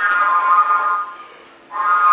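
Concert flute playing a held note that fades out about a second in, then a second held note starting near the end, played with the flute pointed in different directions to show how directional its sound is.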